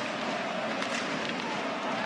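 Ice hockey arena ambience: steady crowd noise from the stands, with a few faint knocks of sticks and puck on the ice about a second in.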